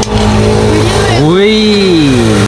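An engine running steadily, revved up once from about a second in and dropping back to idle near the end.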